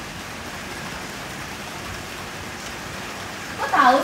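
Steady, even hiss of background noise with no distinct events. A woman's voice comes in near the end.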